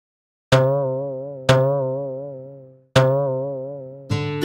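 A twanging cartoon 'boing' sound effect, played three times. Each one starts sharply and fades slowly, with a wobbling pitch.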